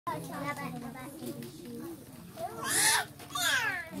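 Children's voices talking together, with two loud high-pitched cries about two and a half and three and a half seconds in, the second falling in pitch.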